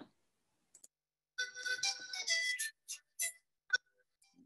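Recorded Bolivian music with a flute-like melody, faint and picked up through a video-call microphone rather than shared directly. It starts about a second and a half in, then breaks up into short fragments.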